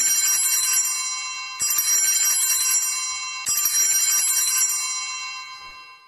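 Altar bells (a cluster of small handbells) rung in three shakes about two seconds apart, each ringing out and fading, the last dying away near the end. They mark the elevation of the chalice after the words of consecration.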